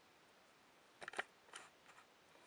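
Near silence, then a few small sharp plastic clicks about a second in and another half a second later, from a small red plastic gift-box toy being handled in the fingers.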